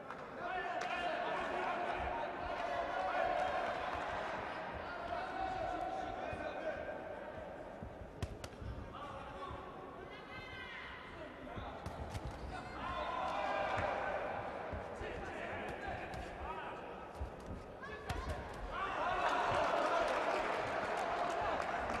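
Boxing arena crowd shouting and cheering, swelling and dropping in waves, with repeated dull thuds from the action in the ring.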